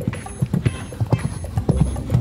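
Hoofbeats of a ridden horse moving at pace over a sand arena: a quick, uneven run of dull thuds.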